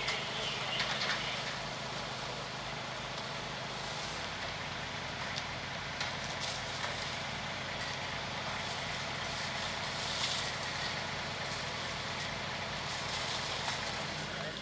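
Fire engine running steadily, with a few crackles from the burning building.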